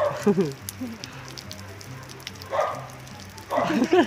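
Rain falling steadily, with drips spattering on wet concrete. About two and a half and three and a half seconds in, two brief rough bursts come as a young pit bull snaps at water dripping from a roof edge.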